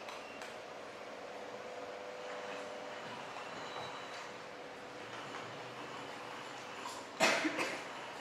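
Steady outdoor ambience from a projected film's soundtrack: an even noise with a faint steady hum. About seven seconds in comes a short, loud clatter.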